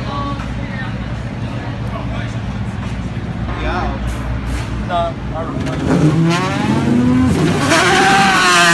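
Voices over a steady low hum. About six seconds in, a Pagani Zonda's Mercedes-AMG V12 revs and pulls away, rising in pitch and getting loud near the end.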